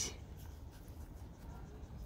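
Faint rustling and scratching of rabbits moving in hay and nosing at pellet bowls, over a low steady background hum.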